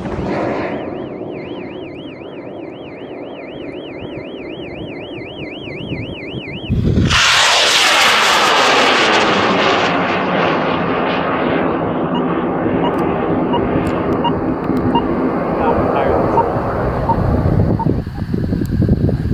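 A warbling electronic tone rises and falls about four times a second. Then, about seven seconds in, the roar of a high-power rocket's M840 solid motor cuts in suddenly and loudly. It drops in pitch and fades slowly as the rocket climbs away.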